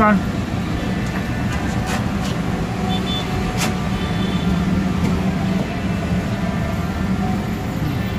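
Steady low hum of motor traffic, with a few faint clicks.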